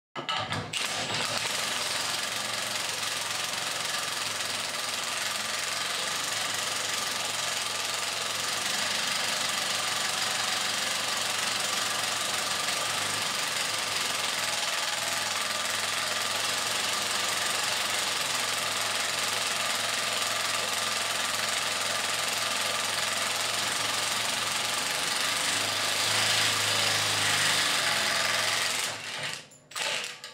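Cordless Milwaukee M18 Fuel impact wrench hammering continuously as an HMT ImpactaStep step cutter bores a large-diameter hole through 6 mm steel plate, stopping shortly before the end.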